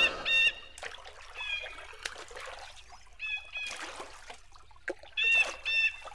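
Bird calls: short pitched calls, mostly in pairs, repeated about four times over faint lapping water, with a few faint knocks.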